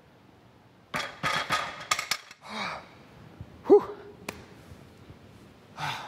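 A loaded barbell with iron plates clicking and clanking on a bench press as a lifter presses it, with forceful breaths on the lift. The loudest sound, a short clank with a brief ring, comes a little past halfway.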